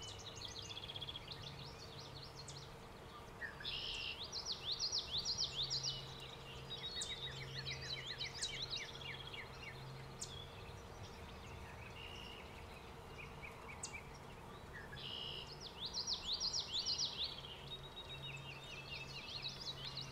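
Songbirds singing: two loud phrases of quick repeated high notes, about four seconds in and again around fifteen seconds, with other chirps between, over a faint low hum.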